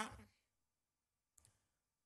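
Near silence in a pause between sentences of a speech, with one faint short click about one and a half seconds in.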